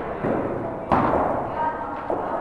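A cricket bat striking the ball once: a single sharp thud about a second in, with voices talking in the background.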